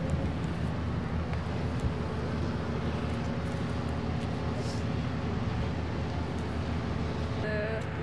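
Steady low outdoor rumble of engines and city background noise, with no distinct events. A man's voice starts speaking near the end.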